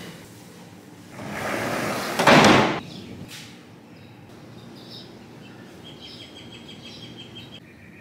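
A sliding glass door is pushed open along its track, a rushing slide that ends in a louder knock about two and a half seconds in. Then birds chirp faintly outside.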